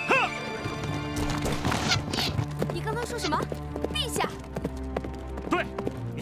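Horse hooves clip-clopping under a film music score with long held low notes, and a man's shouted words at the start.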